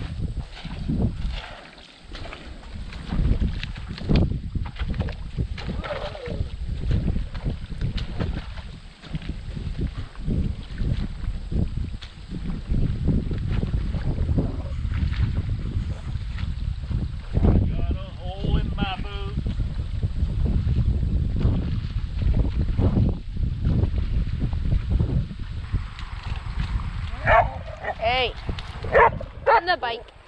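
Water splashing and sticks and mud being pulled and knocked about as a beaver dam is torn apart by hand, over a heavy low rumble, with many short irregular knocks and splashes. Near the end a dog whines and yips several times.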